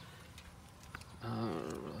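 A man's long, drawn-out "uhh" of hesitation, held on one pitch, starting a little past halfway. Before it there is about a second of quiet background with a soft click.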